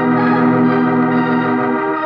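Organ music cue in an old-time radio drama: one long sustained chord, moving to a new chord near the end.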